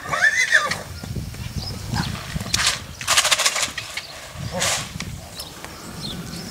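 A horse whinnying briefly at the start, then a young Lusitano's hooves trotting on arena sand, with two or three short breathy bursts near the middle.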